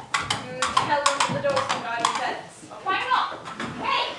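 Coconut halves knocked together as hoofbeats, a quick run of sharp clops in the first second, over voices.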